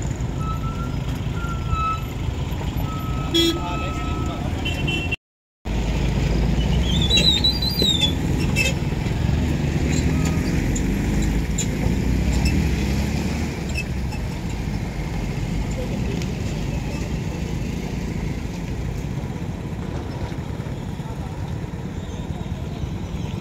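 Indistinct voices over passing road traffic, with a short dropout to silence about five seconds in.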